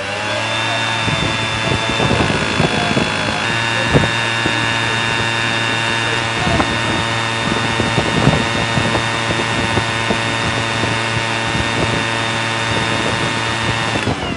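Powerful electric blower fan blasting air like a giant hair dryer for the elevator's drying service. It spins up with a rising whine in the first second, runs steadily with a layered whine and hum, and winds down at the very end.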